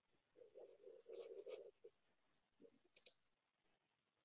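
Near silence, broken by a quick double click about three seconds in: a computer mouse button being clicked to advance a presentation slide.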